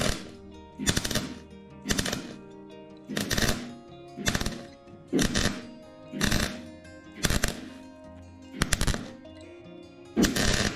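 A MIG welder run without shielding gas crackles in short bursts, about nine of them at roughly one a second, as it tacks over small pinholes in a car's steel bulkhead. Background music plays under it.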